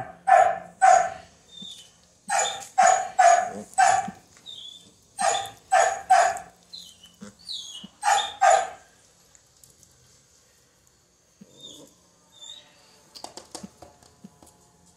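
Small black-and-tan puppy yapping: sharp, high-pitched barks in quick runs of two to four, stopping about nine seconds in. A few faint clicks and scuffles follow near the end.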